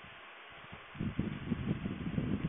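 Crackling, rustling noise on a telephone conference line, starting suddenly about a second in over a faint line hiss: the sound of a participant's unmuted phone microphone being handled or brushed.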